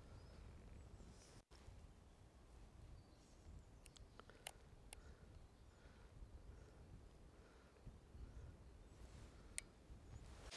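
Near silence: a faint low outdoor rumble with a few faint, sharp ticks, once in a short cluster mid-way and once near the end.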